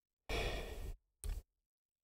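A man's sigh-like breath, lasting a little over half a second, followed by a second, shorter breath.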